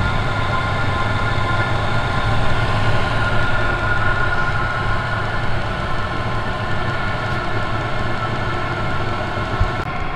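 Chinese all-in-one 8 kW diesel parking heater running steadily while warming up, its blower fan whining over a low burner rumble as it pushes warm air out of the outlets. Not real quiet.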